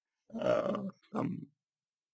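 A man's voice giving two short wordless hesitation sounds, the first longer than the second.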